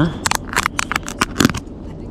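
Snap-on lid of a round plastic bait tub being prised off, giving a quick series of sharp plastic clicks and crackles over about a second and a half.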